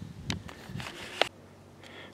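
Quiet movement through a wood-chip-mulched garden: faint rustling with two sharp clicks, about a third of a second and just over a second in, then quieter.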